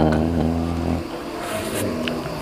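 A man's voice holding one drawn-out vowel at a steady pitch for about a second, then trailing off into quieter background noise.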